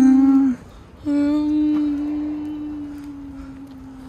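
A voice humming two long held notes on the same pitch: a short one, then after a brief pause a longer one of about three seconds that sinks slightly.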